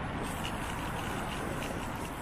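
Steady road and traffic noise with a low rumble, picked up by a camera mounted on a moving bicycle.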